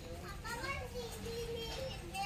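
Children's voices talking in the background, high voices rising and falling in pitch, over a low murmur of store noise.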